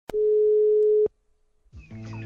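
One ring of a German telephone ringback tone: a steady single tone lasting about a second, then silence. This is the signal heard while a call rings through at the other end.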